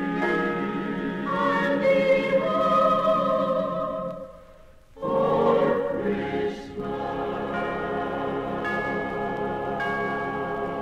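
Mixed choir singing sustained chords with orchestral backing, played from a 1955 78 rpm record. About four seconds in the sound briefly drops away, then a new chord swells in and is held.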